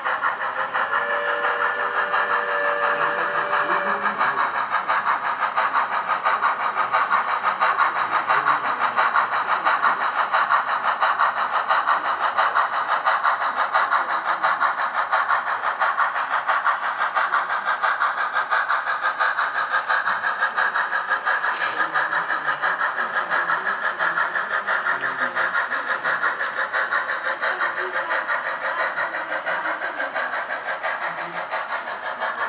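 Sound-equipped H0n3 model steam locomotive playing rapid, steady exhaust chuffs through its small onboard speaker as it pulls a freight train. A brief low steady tone sounds about a second in, and there is a single sharp click past the middle.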